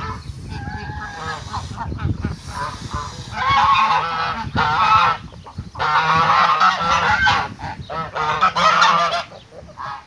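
A flock of geese, brown Chinese geese among them, honking. Scattered calls at first become a loud chorus of repeated, overlapping honks from about three and a half seconds in.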